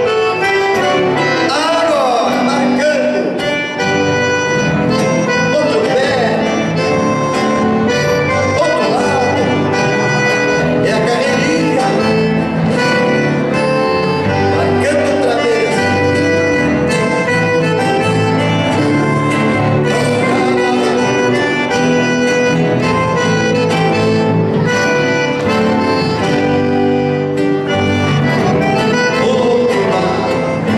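Live gaúcho folk dance music: an accordion leading over strummed acoustic guitars, playing steadily.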